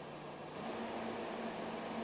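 Faint steady hum of an underground metro platform's background noise, with a low steady tone under an even hiss.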